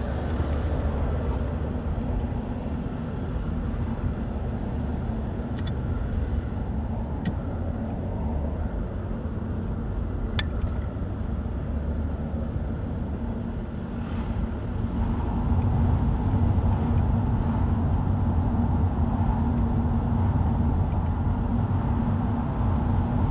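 A car driving on city streets, heard from inside the cabin: steady engine and tyre noise, with a few faint clicks around the middle. The noise gets louder about two-thirds of the way in and stays up.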